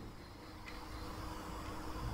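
Quiet room tone with a faint steady low hum and one faint tick about two-thirds of a second in.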